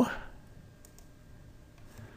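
Two faint computer mouse clicks about a second in, selecting an item from a software menu, over quiet room tone.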